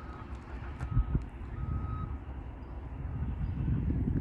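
A vehicle's reversing alarm beeping three times, evenly spaced under a second apart, over a steady low rumble. A sharp knock sounds about a second in.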